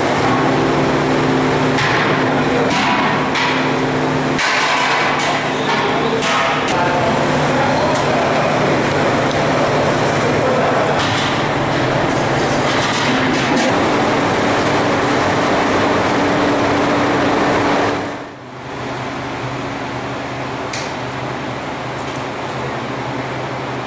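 Steady rushing noise of large gas burners firing under big cooking pots, with a low hum, and metal clanks and knocks of utensils on the pots, several of them in the first seven seconds. Near the end the noise drops to a quieter steady background.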